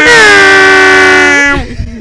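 A loud celebratory horn blast held at one steady pitch with a slight dip, cutting off about one and a half seconds in.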